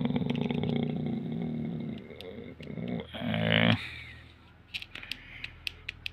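A drawn-out, buzzy voice-like sound for about two seconds, then a short voice-like sound, then several sharp clicks of plastic keypad buttons being pressed in quick succession near the end, as letters are typed by multi-tapping.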